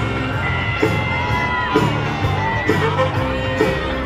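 Upbeat parade music with a steady beat, with people in the crowd whooping and cheering over it.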